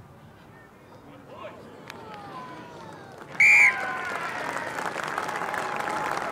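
Stadium crowd murmuring while a rugby penalty kick is in the air, then a short, loud blast on the referee's whistle about three and a half seconds in as the penalty goal is given, followed by crowd applause and voices.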